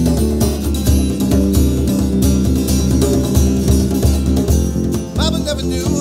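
Live acoustic band playing an instrumental passage: acoustic guitar, djembe hand drum and electric bass. The voice comes back in near the end.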